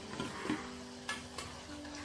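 Hot oil sizzling as leftover-rice vadas (annam garelu) deep-fry in a kadai, with a metal slotted spoon stirring and knocking against the pan: two sharp clicks a little after a second in.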